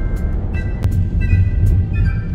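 Background music with scattered pitched notes over a steady low rumble of a car driving, heard from inside the car.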